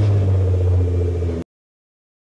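Car engine running steadily with a low hum just after being started, cut off abruptly about one and a half seconds in.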